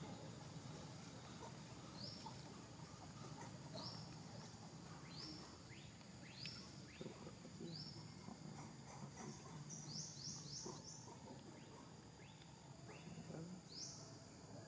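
Faint outdoor ambience with a short, high rising chirp repeated about every one to two seconds, and a quick run of several chirps about ten seconds in.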